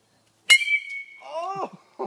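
A baseball bat hits a tossed cell phone about half a second in: a sharp crack with a ringing note that dies away after about half a second. A man shouts "Oh!" right after.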